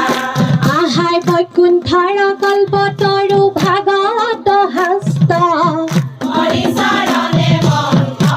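A group of women singing an Assamese devotional song together into microphones, one melody sung in unison, with hand-clapping keeping time.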